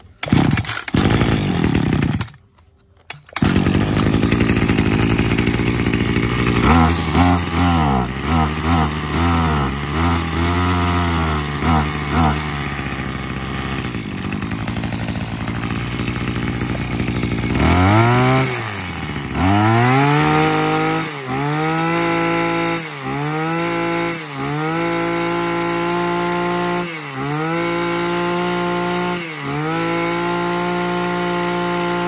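Husqvarna 132 brush cutter's 32cc two-stroke engine starting. It drops out for about a second just after the start, then catches and runs. It is revved repeatedly, then held at high speed with brief throttle drops every second or two, running smoothly.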